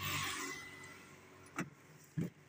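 A soft rustling hiss that fades out, then a single sharp click about a second and a half in, as a Hyundai car's rear door latch is released to open the door.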